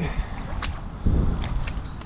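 Wind buffeting the microphone in a low rumble, with a stronger gust about a second in and a few faint clicks.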